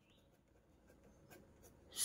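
Faint scratching of a pen writing on paper, a few short strokes in the second half.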